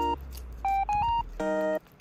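Background music of short, bright electronic beep-like notes, about five in quick succession, stopping abruptly near the end.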